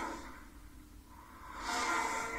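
Movie trailer soundtrack played back: the music fades to a quiet lull, then a rising whoosh of hissing noise swells in near the end, a sound effect as a cloud of pink smoke bursts on screen.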